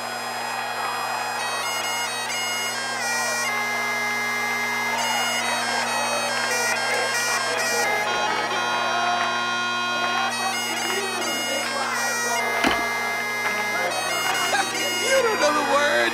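Bagpipes playing a tune over their steady drones, with changing melody notes above the held low tones.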